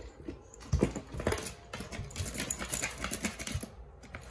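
A puppy playing with a door stopper: rapid, irregular clicks and knocks, with a louder thump about three-quarters of a second in.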